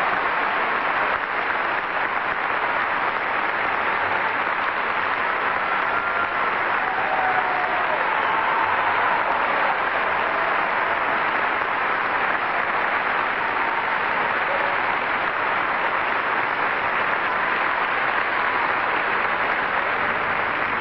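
Audience applauding steadily, with a few faint voices calling out within it.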